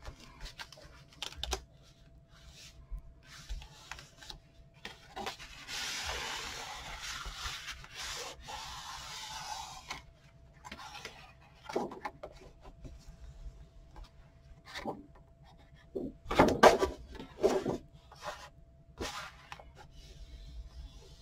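A paper towel is rubbed across glued cardstock pages for a few seconds near the middle, wiping up squeezed-out glue. Around it are scattered taps and rustles of hands pressing and handling the card, with a short, louder burst of handling noise a few seconds before the end.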